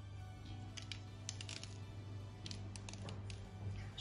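Faint background music over a low steady hum, with two flurries of light ticks, about a second in and again near three seconds: sesame seeds being sprinkled onto egg-washed dough buns on a paper-lined baking tray.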